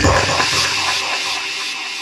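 Outro of an electronic techno track: the kick drum stops and a wash of synthesized noise fades out slowly over faint held synth tones.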